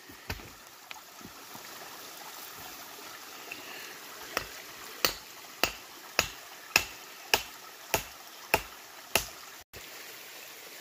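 Creek water running steadily, with a run of about eight sharp, evenly spaced taps, a little over half a second apart, in the second half.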